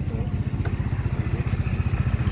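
AJS Modena 125cc scooter engine idling steadily with a fast even low pulse, freshly started on a new battery and left running so the battery charges. One sharp click sounds less than a second in.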